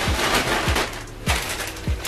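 Plastic mailer bag rustling as a hand rummages inside it, over background music with a deep, evenly spaced bass-drum beat.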